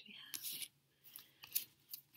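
A deck of tarot cards being shuffled by hand: a short papery swish, then several light snapping clicks as cards are pushed through the deck.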